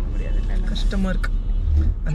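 Low, steady rumble of a moving car heard from inside the cabin, swelling near the end, with a few quiet spoken words over it.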